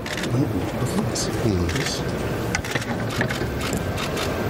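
Indistinct men's voices over the steady background chatter of a crowded hall, with a few scattered clicks.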